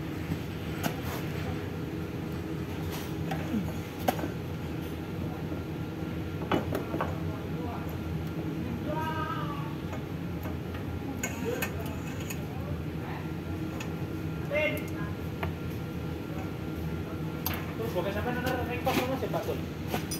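Scattered light clicks and knocks of hands and tools working at a fuel dispenser's pump motor, undoing its ground wire under the mounting plate, over a steady low background hum.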